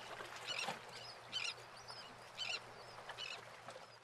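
Short high calls, repeated roughly once a second with small chirps between them, over a steady low hum and hiss; the sound fades out near the end.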